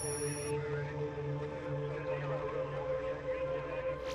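Ambient electronic background music: a sustained drone of steady tones over a slow, pulsing low note. A brief high electronic glitch sound comes at the very start.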